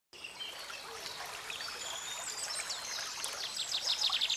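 Several small birds singing and chirping over a steady outdoor hiss, ending in a fast trill of repeated notes.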